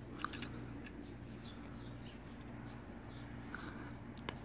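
A few light plastic clicks and faint ticks from a plastic pill cutter being handled as a pill is set into its die, the clearest clicks in the first half second, over a steady low room hum.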